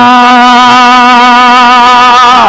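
A man's voice holding one long chanted note with a slight waver: the drawn-out final vowel of 'nabiyya' in melodic Quranic recitation during a sermon.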